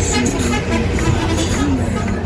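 Steady low rumble of a moving bus's engine and road noise, heard from inside the passenger cabin.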